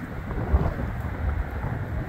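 Wind buffeting the microphone: an uneven low rumble in gusts, with a sharp thump of it about half a second in.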